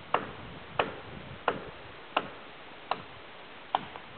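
Footsteps walking at an even pace on a dry dirt forest trail: six crisp steps, about three every two seconds.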